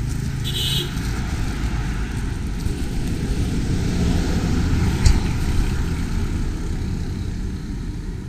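Road traffic running by on a roadside, a low steady rumble that swells as a vehicle passes in the middle, with one sharp knock about five seconds in.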